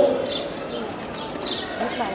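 Small birds chirping in short, high, falling chirps that recur every half second or so, over a low murmur of children's voices.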